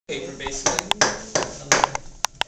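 A hand knife cutting into a carved wooden mask, giving a few sharp clicks and snaps as chips come off, two close together near the middle and two more near the end.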